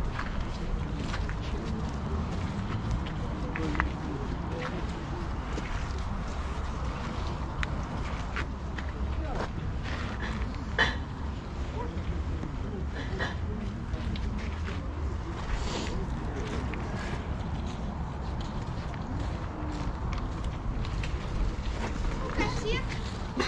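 Outdoor flea-market ambience: a low murmur of people talking in the background over a steady low rumble, with scattered light clicks and knocks, the sharpest about halfway through.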